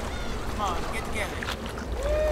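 Short, excited shouts and laughter from several men, each call falling in pitch, over a steady low rumble.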